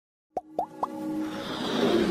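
Logo-intro sound effects: three quick pops, each rising in pitch, about a quarter second apart, followed by a swelling electronic music build.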